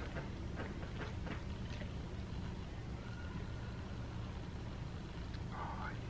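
Metal serving utensil cutting down through taco lasagna in a glass baking dish: a few faint clicks and scrapes in the first two seconds, and a short sound near the end as a slice is lifted out. A steady low hum runs underneath.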